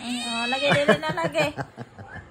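A kitten meowing while being given eye drops: one drawn-out, high cry, then a run of shorter, broken cries.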